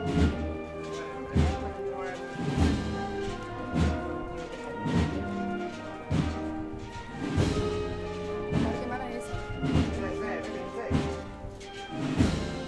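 Municipal wind band playing a slow processional march: sustained brass and woodwind chords over a heavy bass drum beat, about one stroke every 1.2 seconds.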